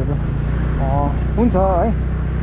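Motorcycle engine running steadily at low road speed, a constant low hum. Short bits of a person's voice come over it about a second in.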